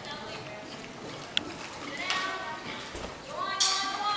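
Hoofbeats of a barrel-racing horse galloping on arena dirt. People's voices rise over them from about two seconds in, growing louder near the end.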